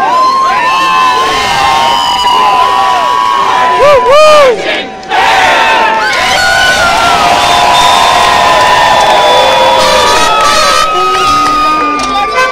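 Large crowd cheering and shouting, many voices overlapping in whoops and yells, with one louder call close by about four seconds in.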